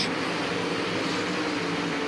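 Winged 410 sprint car engines running at racing speed on a dirt oval, a steady drone.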